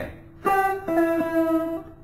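Electric guitar playing two single picked notes of a Phrygian-mode exercise, the first about half a second in and the second about a second in, ringing until shortly before the end, over a held lower note.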